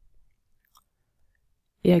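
Near silence: room tone with one faint short tick, then a woman starts speaking near the end.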